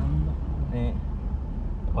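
Steady low rumble of a car driving on a rough dirt road, heard from inside the cabin.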